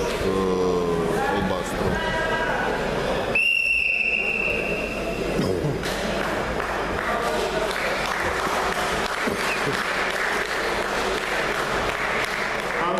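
Wrestling referee's whistle: one long, steady blast of about two seconds, stopping the bout. Voices before it and spectators applauding after it.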